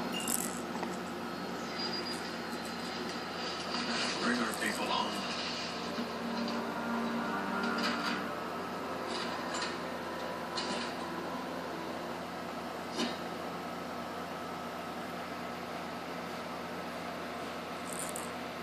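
A baby's clear plastic bead rattle giving a few scattered clicks as it is moved about in the baby's hands, over a steady room hum.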